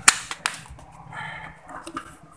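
Sharp clicks and knocks from a rice cooker's casing being handled as it is closed up after repair. The loudest click comes right at the start, with a lighter one about half a second later and another near the end.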